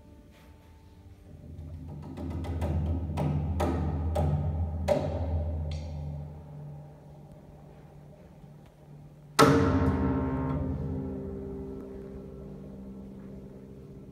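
Grand piano: a low rumbling tremolo in the bass builds up with several sharp, hard strikes over it, then fades; about nine seconds in a single loud chord is struck and rings out, slowly dying away.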